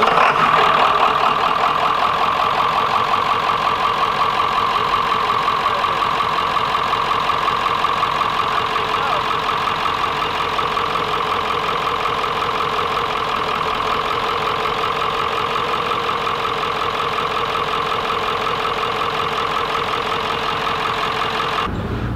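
A machine running steadily, a continuous even drone that cuts off abruptly near the end.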